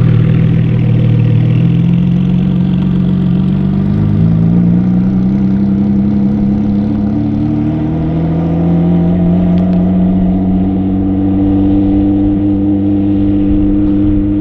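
Ferrari F50's V12 engine pulling away at low speed, its note climbing slowly in pitch for the first several seconds and then holding steady.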